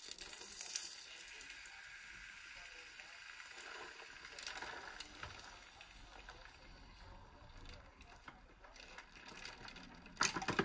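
Hot fused glass quenched in a bowl of ice water: a sharp hiss as it goes in, which settles into a steady sizzle and fades over the next few seconds. Faint clicks and sloshing follow as tongs move through the ice water.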